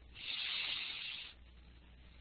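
A steady hiss lasting a little over a second, stopping fairly suddenly, then only faint background noise.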